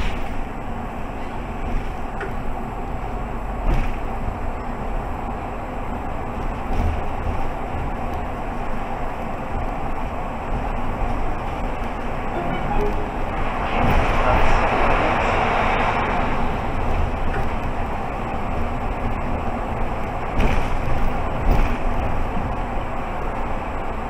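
Mercedes-Benz Citaro G articulated city bus driving steadily at about 30–45 km/h, heard from inside the driver's cab: continuous engine and tyre noise. Just past the middle a louder rush of road noise swells for about two seconds as the bus passes through a road underpass.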